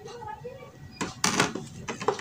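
Metal spoon clinking and scraping against a plastic tub as colouring is stirred into soapy bubble liquid, with a few sharp clicks about a second in.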